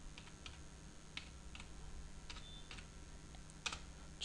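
Computer keyboard being typed on: several faint key clicks at an uneven, unhurried pace as a short command is entered.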